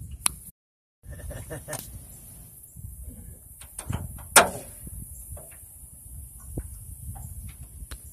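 Low rumble with scattered light knocks and clicks aboard an aluminium jon boat, one sharp click about four and a half seconds in. The sound drops out for about half a second near the start.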